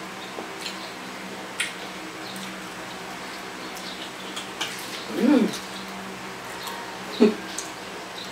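Close-up eating sounds of braised pig's head eaten by hand: wet chewing, lip smacks and small mouth clicks. A short hummed vocal sound comes about five seconds in and a sharper smack near the end, over a steady low hum.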